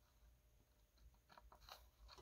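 Near silence, with a few faint, short crackles in the second half as solder melts on a soldering-iron tip and its flux spits.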